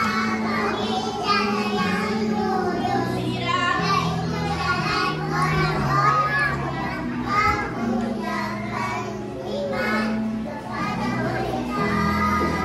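Young children's voices singing a song over a recorded backing track with held bass notes.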